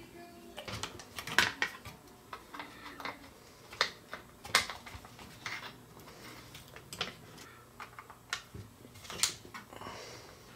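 Quiet, irregular clicks and light taps of small plastic and metal parts being handled and fitted while an RC truck's rear suspension is put back together.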